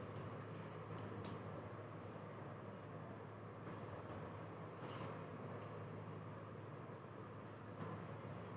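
Quiet, steady room noise with a low hum, broken by a few faint, light clicks and clinks a few seconds apart, the clearest about five seconds in, from glass bangles on the wrist of a hand massaging the face.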